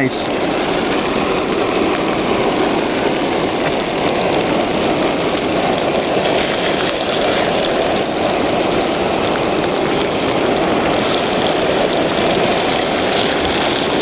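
Propane camp stove burning steadily under a cast-iron skillet of hot olive oil, a continuous rushing sizzle as pieces of grouse are laid into the pan.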